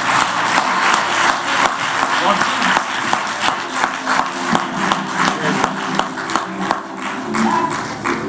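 Congregation clapping and calling out at the close of a sermon, the claps settling into a steady beat of about three a second. Held keyboard notes come in about halfway through.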